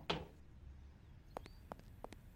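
A single knuckle knock on a hard surface, the last of a few raps mimicking a knock at a front door, followed by near quiet with a few faint clicks in the second half.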